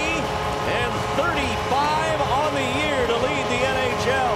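A man's voice talking over the steady noise of an ice-hockey arena crowd.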